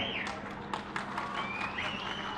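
Audience noise in a hall during a pause in a speech: a scatter of sharp, irregular taps, low voices, and a few high thin sounds gliding up and down in the second half, over a steady low hum.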